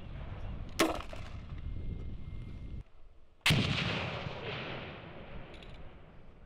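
A hand-held grenade launcher fires once, a sharp crack about a second in. Later a louder blast follows as the grenade explodes at the target about 150 m downrange, its rumble rolling away slowly.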